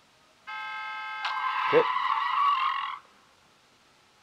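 Sound effects from a crude 3D SpongeBob parody animation. A steady, buzzy pitched tone comes in abruptly about half a second in. A sudden hit follows a little over a second in, then a louder, rougher sound until it cuts off at about three seconds.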